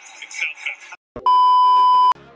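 A loud, steady colour-bars test tone: one unwavering high beep that comes in with a click about a second in, just after the broadcast sound cuts out abruptly.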